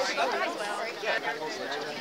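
Indistinct chatter of several voices among spectators, quieter than the close talk either side.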